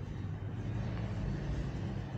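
A steady low rumble of background noise, like road traffic, with no distinct events.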